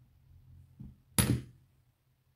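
Metal euro lock cylinder body set down on a plastic pin tray: one sharp knock a little over a second in, with a softer tap just before it.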